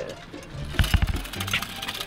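Tin wind-up Sky Ranger toy's clockwork motor starting up with a rapid, buzzing rattle, after a thump about a second in. Background music plays underneath.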